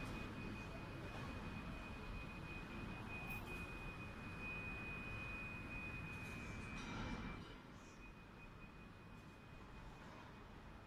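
Quiet airport terminal hall ambience: a steady low hum of the building with a thin, steady high-pitched tone over it. The tone weakens and the hum drops a little about seven and a half seconds in.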